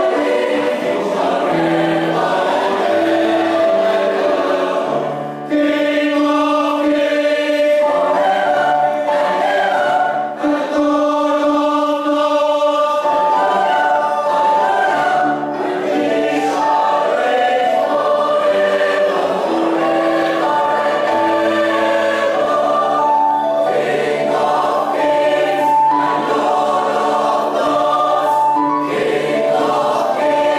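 Mixed choir of men's and women's voices singing a Christmas carol, with held notes and two short breaks between phrases, about five and ten seconds in.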